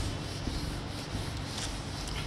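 Whiteboard eraser rubbing marker off a whiteboard in quick wiping strokes.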